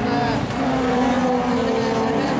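Super 2400 class rallycross cars racing, engines running hard at high revs. One engine note steps up in pitch near the start and then holds steady.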